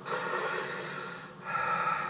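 A person's audible breathing: a long breath, then a shorter one about one and a half seconds in. It is heard through a television speaker.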